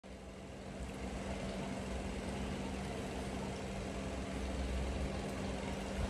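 A steady machine hum: one constant low tone over an even rumble, with no change in speed or pitch.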